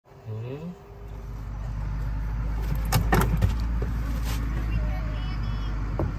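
Golf cart riding along a sandy road: a steady low rumble, with a quick cluster of rattles and clicks about three seconds in.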